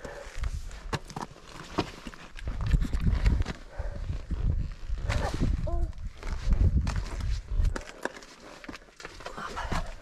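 Footsteps and shoe scrapes on granite rock while scrambling uphill: irregular clicks and scuffs, with bursts of low rumble on the microphone. A short voice sound about five seconds in.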